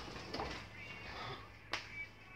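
Two sharp snaps: a softer one about a third of a second in and a louder one near the end.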